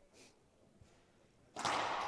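Racquetball serve: a sudden sharp crack of the racquet striking the ball about a second and a half in, ringing on in the echo of the enclosed glass-walled court.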